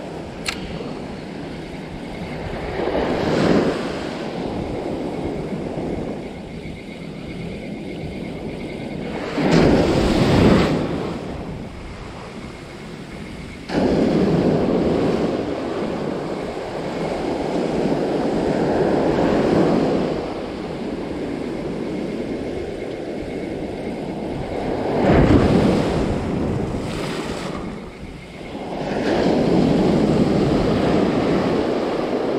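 Surf breaking and washing up a sandy beach, swelling and fading in several surges of noise every few seconds, with wind on the microphone.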